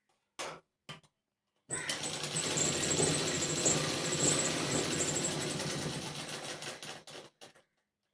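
Electric sewing machine stitching a seam at speed for about five seconds, a fast steady chatter of needle strokes that starts about two seconds in and stops near the end. A few short clicks and taps come before and after it as the fabric is handled at the machine.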